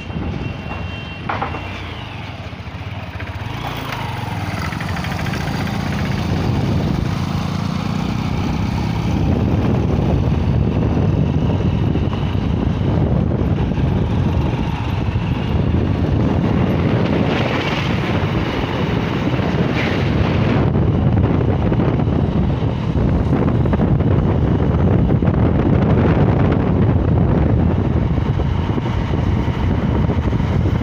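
Steady road and wind rush from riding a moving vehicle along a highway, building over the first ten seconds or so as it gathers speed, then holding steady.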